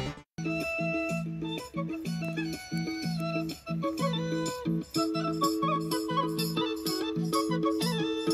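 Indian folk dance music with a steady, rhythmic pulse and melody notes on top. It starts a moment in, after a brief gap.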